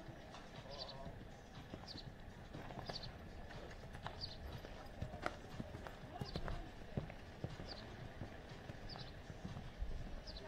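Hoofbeats of a horse cantering on a sand arena, a run of short dull thuds with a few louder strikes in the middle. A short high chirp repeats about once a second behind them.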